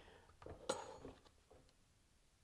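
Two faint clicks from a plastic oil drain plug being twisted out by hand, the second sharper with a brief ring, then near silence.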